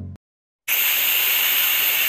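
Steady sizzling hiss, starting just over half a second in.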